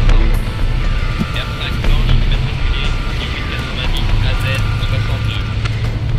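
Car sound effect: an engine rumbling as the car starts off and speeds away, over background music.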